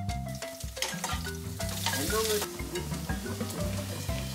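Oiled jackfruit leaves sizzling on a hot iron tawa, the sizzle swelling to its loudest in the middle, over background music.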